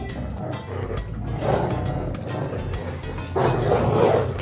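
Dog growling in rough stretches during a tug-of-war over a plush toy, once about a second and a half in and again, louder, near the end, over background music.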